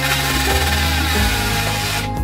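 Background pop music over the whirring hiss of a Holy Stone HS160 mini quadcopter's propellers.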